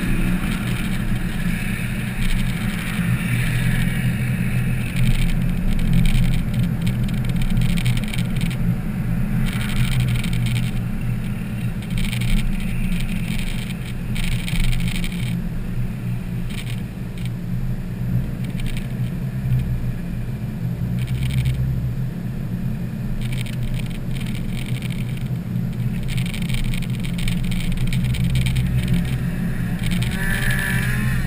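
Road and engine noise heard from inside a moving car, a steady low hum, with short, irregular bursts of higher-pitched noise on top.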